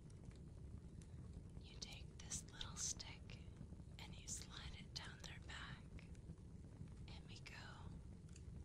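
Soft whispering in short phrases, starting about two seconds in and pausing before a last phrase near the end, over a low steady background hum.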